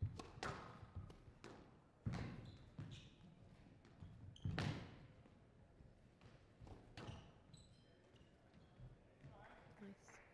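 Squash ball struck by rackets and hitting the court walls during a rally: a string of sharp cracks, the loudest about four and a half seconds in, then fewer and fainter hits.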